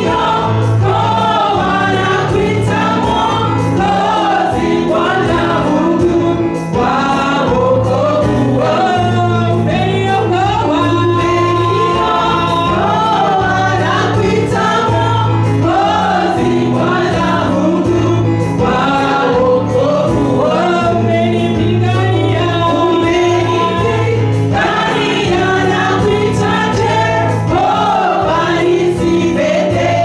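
Live gospel worship song: a lead singer on a microphone and a choir singing together over instrumental accompaniment with sustained low notes and a steady beat.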